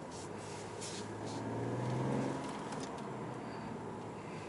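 Mercedes-Benz CLS engine heard from inside the cabin, swelling as the car accelerates gently through city traffic, loudest about two seconds in before easing back to a steady cruise.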